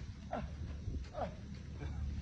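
A man's short, strained cries of 'ah', about one a second, each falling in pitch, as he labours up a steep sand dune on foot.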